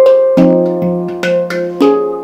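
SPB pantam handpan played with the hands: a quick run of struck notes, about four a second, each ringing on under the next.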